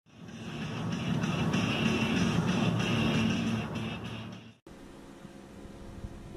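Car cabin noise with music playing, fading in and cutting off abruptly about four and a half seconds in, followed by a quieter steady hum.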